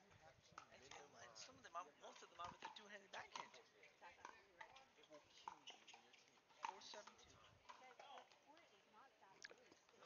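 Pickleball paddles striking the ball during a rally, heard as faint, irregular hollow pops a second or so apart, under faint distant voices.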